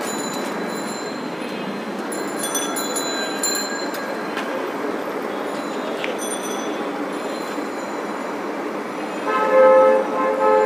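Steady background noise of a busy shop, with a horn-like steady tone sounding near the end.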